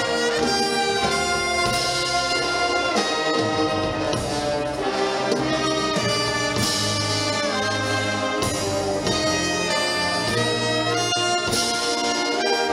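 Wind band playing: trumpets, trombones and saxophones carry a melody over sustained chords and a low bass line, at a steady full volume.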